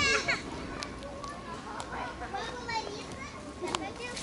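Children's high-pitched voices calling and shouting as they play, at a distance, with a few light clicks.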